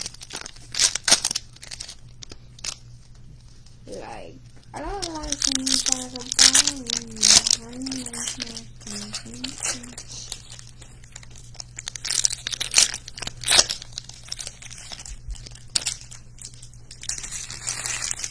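A foil trading-card pack wrapper is torn open and crinkled by hand, with cards handled against each other: a run of sharp crinkles and rustles. A drawn-out wordless vocal sound runs from about four to ten seconds in.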